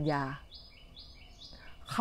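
A bird calling over and over, a short high note and a slightly lower note in turn, each held at a steady pitch, about twice a second.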